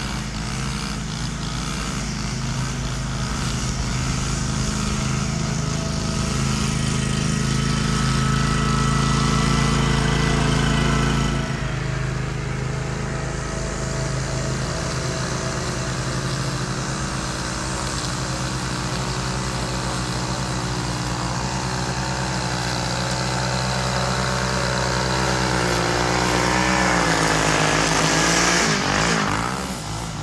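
Small gasoline engines running steadily: a handheld string trimmer cutting grass, with a stand-on mower's engine alongside. Near the end the engine pitch dips and picks up again.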